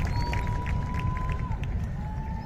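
Marching band field show: scattered percussion hits thin out under a single held high note, which breaks off and is followed near the end by a second, slightly lower held note.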